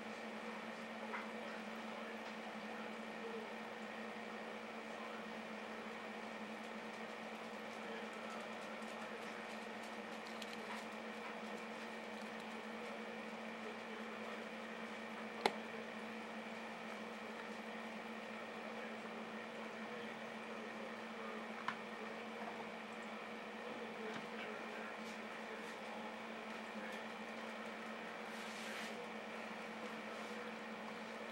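Steady hum of running aquarium equipment, with two sharp clicks, one about halfway through and a fainter one a few seconds later.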